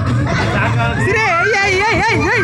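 Voices in a room: mixed chatter, then from about a second in a high voice whose pitch swoops up and down repeatedly.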